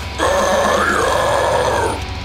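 Deathcore guttural vocal: one long, harsh growl starting just after the start and held until just before the end, over a heavy metal backing track with a steady low bass.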